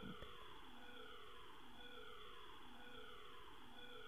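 A faint siren in the background whose pitch falls and starts again about once a second, over low room hiss.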